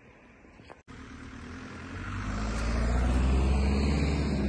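A car driving past close by, its engine and tyres growing louder from about a second in and loudest near the end.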